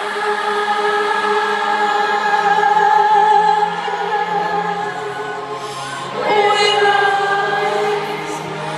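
Live ballad singing in a large arena: long, slowly held sung notes, with a new phrase starting about six seconds in.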